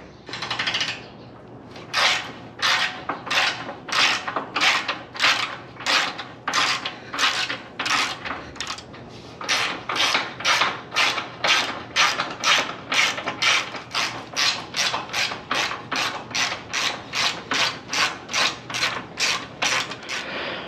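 Hand ratchet wrench clicking in steady back-and-forth strokes, about two a second, as bolts are loosened and taken off a steel trailer frame. The strokes pause briefly about nine seconds in, then carry on.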